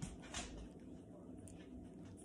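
Chihuahua chewing and licking soft wet dog food from a hand, with a few wet mouth clicks in the first half second, then fainter, sparser smacks.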